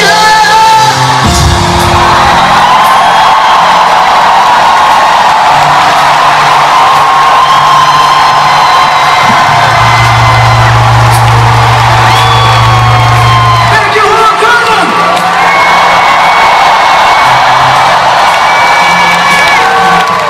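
A live band holds long closing chords at the end of a pop song, the low notes changing every few seconds, while a big arena crowd screams and whoops over it.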